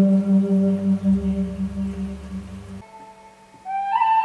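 A low wind instrument holds one long, low note that fades and stops abruptly about three quarters of the way through. Near the end a higher flute note begins, sliding up slightly.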